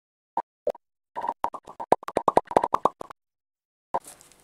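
Popping sound effect over an intro title card: two single pops, then a quick run of about nine pops a second lasting two seconds, at slightly different pitches, and one more pop near the end.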